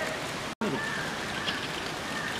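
Steady outdoor background noise with faint distant voices, broken by a very brief dropout to silence about half a second in.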